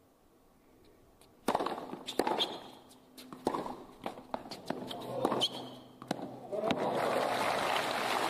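Tennis rally on a hard court: the serve is struck about a second and a half in, followed by a string of racket hits and ball bounces. Crowd applause rises near the end, when the point is over.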